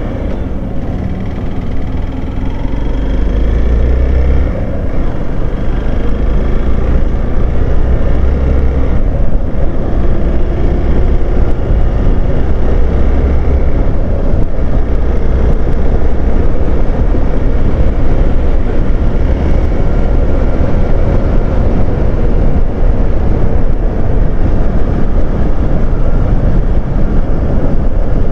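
Hero Xpulse 200 motorcycle's single-cylinder engine running as the bike rides along a road, under heavy wind rumble on the microphone. The sound grows louder about two to four seconds in as the bike picks up speed, then holds steady.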